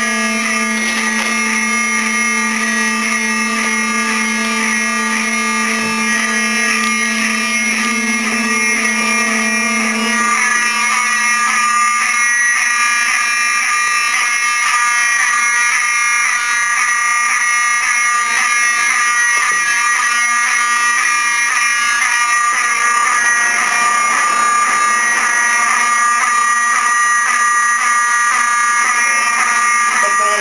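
Apartment building fire alarm sounding continuously, a loud, rapidly pulsing electronic tone. It was set off by smoke from ramen left burning on a shared kitchen stove.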